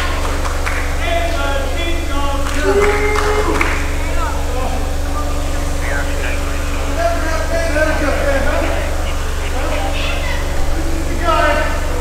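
Scattered shouting voices of onlookers and wrestlers over a steady low hum.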